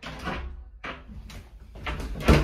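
A few short clatters and knocks from a home elevator's folding door being handled.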